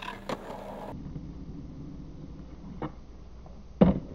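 Skateboard on concrete: a couple of clacks as the board is set down and stepped on, then the wheels rolling with a steady low rumble. A light click near three seconds and a loud sharp clack just before the end, as the board strikes the ground.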